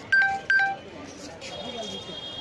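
Two short, loud electronic beeps about half a second apart, each a single steady pitch, over a background of people talking.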